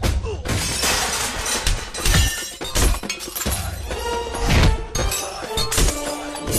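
Repeated crashes and glass shattering, dense and loud throughout, with music running underneath.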